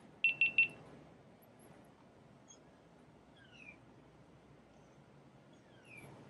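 Three quick, identical electronic beeps on one high tone, then quiet with two faint, short falling chirps later on.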